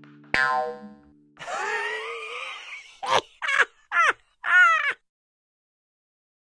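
A closing sound-effect sting: a single struck, ringing note, then a wobbling, warbling tone and four quick swooping tones.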